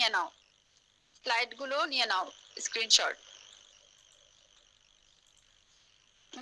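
Brief spoken words near the start and again for about two seconds a little after, then a faint, steady high-pitched hiss for the rest.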